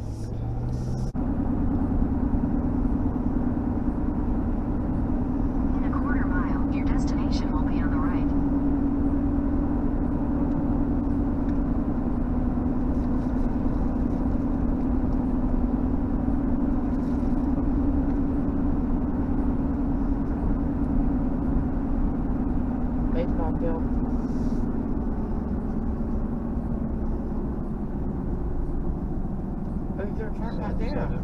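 Car engine and tyre noise heard from inside the cabin while driving, stepping up about a second in as the car gathers speed, then a steady drone with a low hum.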